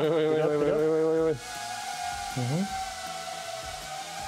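A small ducted-propeller FPV drone humming steadily in flight. Over it, a person's drawn-out vocal sound lasts about the first second, and a short voiced 'uh-huh' comes midway.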